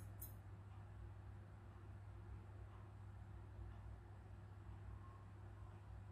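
Near silence: room tone with a steady low hum and faint hiss, and one brief faint tick just after the start.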